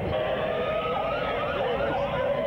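Small ride-on kart's motor running with a steady whine, with short rising-and-falling squeals over it and a low rumble.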